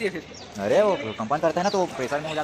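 A man's voice calling out without clear words, drawn-out sounds that rise and fall in pitch, starting about half a second in.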